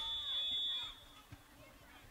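Faint, distant voices of players and onlookers around a youth football field, with a thin, steady high tone over the first second that then fades, leaving low background murmur.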